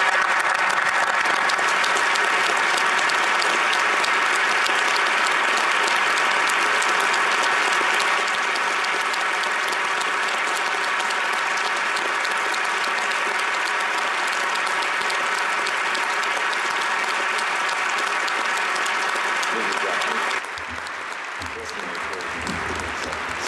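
A large crowd applauding at length, a steady mass of clapping that eases slightly about eight seconds in and turns quieter near the end.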